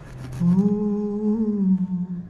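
A person humming one long held note that starts about half a second in, bends slightly up and then falls away near the end.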